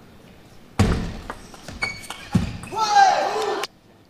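Table tennis ball knocks in a short rally, then arena crowd cheering with a loud shout once the point is won; the sound cuts off abruptly near the end.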